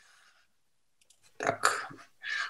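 About a second of dead silence, then a short, noisy vocal sound from a person in the last half-second, such as a breath or throat noise.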